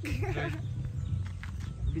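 Honda XRM 125 motorcycle's single-cylinder four-stroke engine, a fresh four-valve build still being broken in, running low and steady while the bike rolls slowly along a gravel road.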